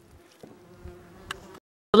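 A flying insect buzzing with a faint, steady hum, broken by a couple of faint ticks. It cuts off suddenly shortly before the end, just before a voice starts.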